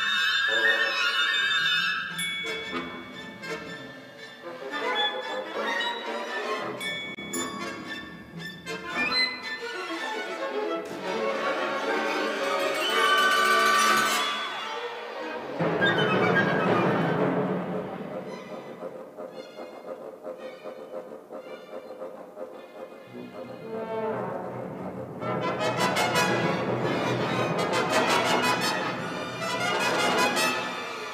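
Symphony orchestra playing contemporary classical music live. Sharp, scattered attacks come in the first seconds, followed by dense passages that swell up and die back several times.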